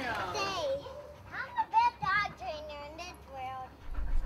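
A young girl's high-pitched voice calling out in a string of short, sliding calls with no clear words.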